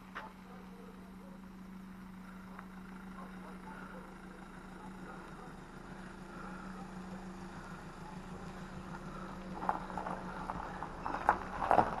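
A motorhome's engine running at low speed as it drives in, a steady hum that grows louder as it approaches, with a few short clicks near the end.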